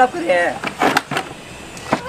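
Boys' voices talking in Hindi, with a brief knock or scuffle about a second in and another short knock near the end.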